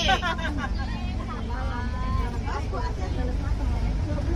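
Women's voices chattering inside a bus cabin over the low, steady rumble of the bus's idling engine.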